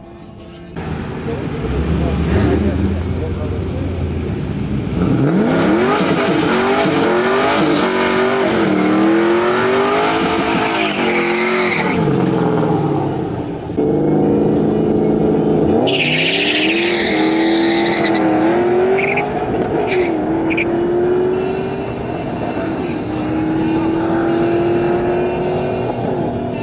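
Drag-racing cars at full throttle. The engine pitch climbs, then drops at each gear change and climbs again, several times over. Partway through there is a brief tyre squeal at a launch, followed by another hard run up through the gears.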